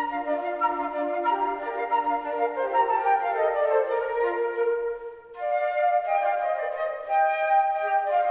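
Ensemble of concert flutes playing together in several parts, sustained notes stepping from one to the next, with a brief break about five seconds in before the playing resumes.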